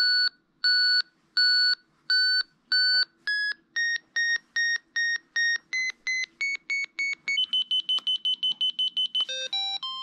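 Avalanche transceiver in search mode beeping as a companion's sending transceiver comes closer: the beeps start about one and a half a second, then speed up and step up in pitch, turning into a fast high beeping about seven seconds in, the sign of the signal closing to within a couple of metres. Near the end a quick run of different notes and a longer held tone sound.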